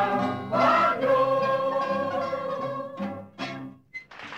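Choir with a mandolin ensemble ending a song: a long held final chord, then two short closing chords about three seconds in, after which the music stops.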